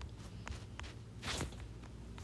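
A few faint stylus taps on a tablet screen, then one short, louder rustle about halfway through, over a low steady hum.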